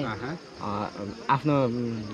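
Men talking, with a brief buzz lasting under half a second, a little more than half a second in, just before the speech resumes.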